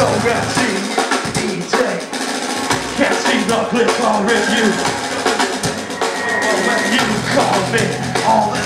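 Live heavy metal band playing loud, with drums hitting throughout. The heavy low end drops away about half a second in and comes back near the end, leaving mostly drums and higher parts in between.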